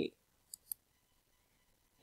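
Two short, faint clicks about a fifth of a second apart.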